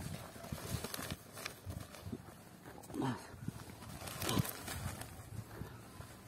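Quiet handling sounds of hands dropping urea fertilizer granules into soil-filled black plastic nursery bags: scattered faint clicks and rustles. There are two short, low, voice-like sounds, about three and four and a half seconds in.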